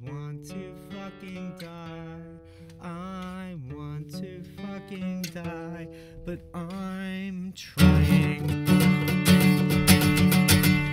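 Solo acoustic guitar with a voice singing over it. About eight seconds in, the playing turns much louder, with hard, fast strumming.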